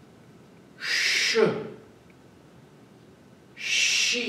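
A man twice exhaling a long breathy healing sound, a strong "shh" hiss that slides down into a low falling voiced tail, about a second in and again near the end: the "she" and "shui" breaths of the Tai Chi Chih six healing sounds.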